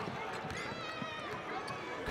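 Basketball arena crowd noise, with a basketball being dribbled on the hardwood floor, a thud about every half second.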